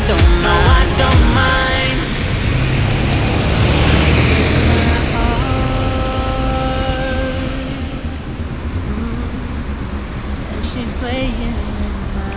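London bus pulling away on a wet road: engine running and tyres rushing on the wet surface, with a steady whine in the middle. A pop song with singing plays over the first two seconds and comes back near the end.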